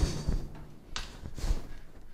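The noise of a cutoff wheel cutting the steel rocker panel dies away in the first half second. A few faint, short knocks follow as the metal is handled.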